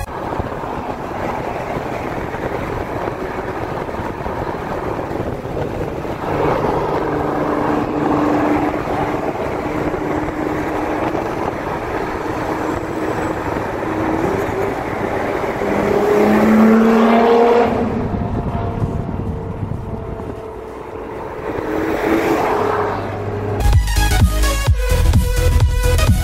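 Wind and road noise at highway speed at the open window of a supercharged C7 Corvette Stingray, with the engine note climbing in pitch as the car speeds up, loudest a little past halfway.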